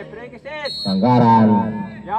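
Men shouting loudly, cut by a short, high, steady whistle blast just over half a second in, typical of a referee's whistle stopping play for a foul.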